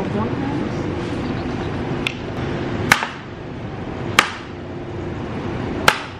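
Four sharp plastic clicks from a takeaway food container being handled, its lid and a fork knocking on the plastic, spaced about a second apart with the last near the end, over a steady murmur of voices.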